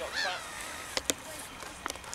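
A single goose honk right at the start, followed by three sharp clicks about a second in and near the end.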